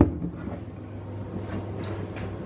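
A short knock right at the start, then a steady low hum with a few faint ticks.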